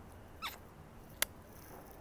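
Two faint, brief sounds over a quiet background: a short squeak about half a second in, then a sharp click a little after a second.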